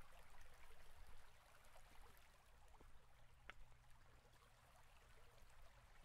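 Near silence: faint room hiss with a few soft clicks, the clearest about halfway through.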